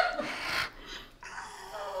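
A man's faint, breathy whimper right after a chiropractic neck adjustment, fading out within the first second. It is a put-on sound of pain, not real distress.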